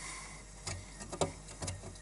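A few light, irregular clicks and knocks as a hand moves among the bottles and the wire shelf inside a fridge, over a low steady hum.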